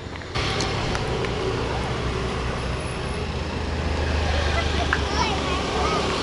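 Street traffic noise: motor scooters and cars running along a busy road, with a steady low engine hum and faint voices in the background.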